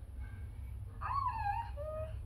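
A short, high whining vocal call about a second in, falling in pitch, followed near the end by a shorter, lower note.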